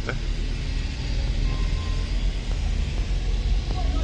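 Low, steady rumble of a car running, heard from inside its cabin.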